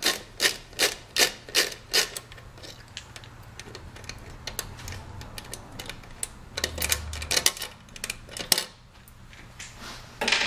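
Screw and nut being worked loose from a motorcycle's chrome passing-lamp mount with a Phillips screwdriver: a run of regular sharp clicks, about three a second, for the first couple of seconds, then quieter rubbing and a few more clicks near the end.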